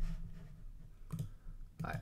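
A few light computer mouse clicks, one about a second in and another near the end, over quiet room tone.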